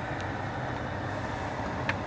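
Steady blowing hiss of the climate-control fan inside the cabin of a 2013 Cadillac XTS, with the engine idling, and a faint tick near the end.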